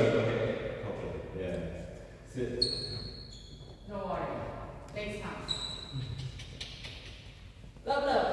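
Sports hall sounds: faint, broken voices, two short high-pitched squeaks of trainers on the wooden court floor, and a few sharp knocks, all with the echo of a large hall.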